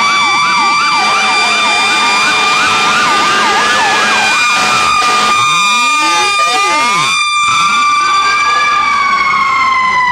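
Several fire engine sirens sound together: a fast yelp warbling about four to five times a second and a slower rising-and-falling wail over a steady high siren tone. The yelp stops about halfway through, and near the end the steady tone slides lower in pitch.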